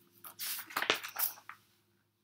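A picture book's paper page being turned by hand: a brief soft rustle with a sharp click just under a second in.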